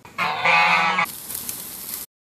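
A loud honk-like pitched call lasting about a second. Then, after a sudden change, a steady sizzling hiss of burger patties cooking on a gas grill.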